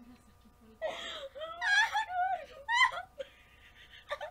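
Two young women laughing hard with high-pitched squeals and gasps, in several outbursts starting about a second in after a short lull.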